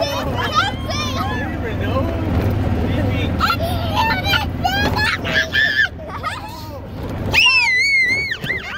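Go-kart rolling along a dirt track with a steady low rumble, under children's high-pitched voices and squeals. The rumble drops out about seven seconds in, as a child's voice rises loud.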